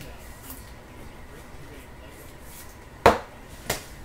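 Trading cards being handled in clear plastic sleeves and top loaders on a table: a faint plastic rustle, then two sharp taps about half a second apart near the end as cards are set down.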